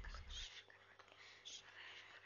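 Near silence with faint whispering. A low rumble fades out about half a second in.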